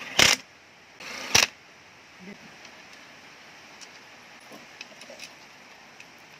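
Two brief bursts of a small handheld rotary grinder biting on the crankcase of a Honda GX390 engine, about a second apart, followed a few seconds later by a few faint metallic clinks.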